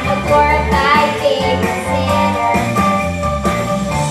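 A young girl singing into a handheld microphone over a recorded backing track.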